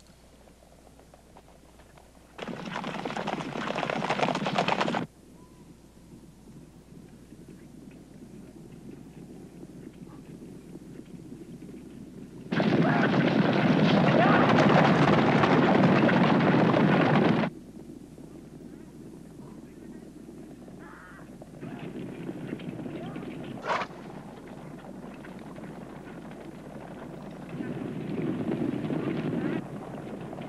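Hoofbeats of a band of galloping horses on rocky, dusty ground, loud in two stretches: one of about two and a half seconds starting two seconds in, and a longer, louder one of about five seconds around the middle. Quieter stretches lie between and after them, broken by a single sharp crack about three-quarters of the way through.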